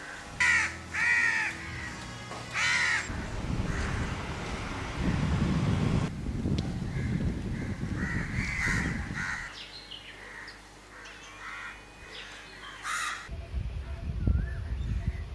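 Crows cawing: three loud caws in the first three seconds and one more near the end. Softer calls of other birds and a low rumble fill the middle.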